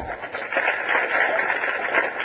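An audience clapping for about three seconds: a dense, even patter of hands that starts just after a short thump.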